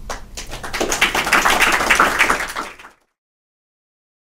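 Audience applauding, a dense patter of many hands clapping that swells about a second in, then cuts off abruptly about three seconds in, leaving dead silence.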